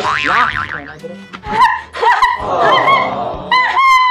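Comic sound effects over background music: tones whose pitch wobbles up and down, then a tone that slides downward near the end.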